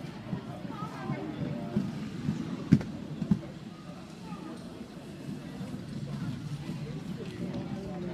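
Speed skates' wheels rolling on a wooden rink floor as a pack of skaters passes, a steady low rumble with two sharp knocks about three seconds in, over background voices.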